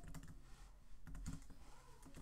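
Faint typing on a computer keyboard: a few light, irregular keystrokes as a short phrase is typed.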